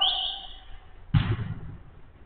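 A man's shout tailing off, then a single loud thud of a football being struck about a second in.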